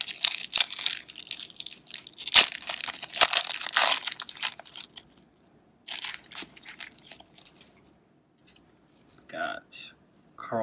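Foil wrapper of a 1992 O-Pee-Chee Premier baseball card pack being torn open by hand: a run of loud crackling tears and crinkles over the first four seconds or so, then a few softer crinkles as the cards come out.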